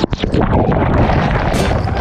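Loud, churning rush of sea water over an action camera tumbled in breaking surf, with a few knocks against the camera.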